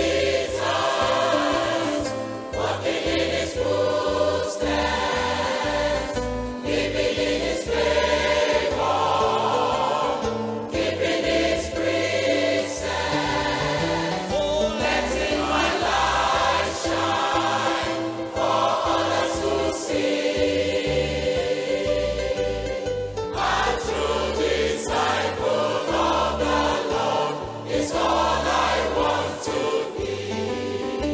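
Gospel choir singing together over instrumental backing with a steady bass line.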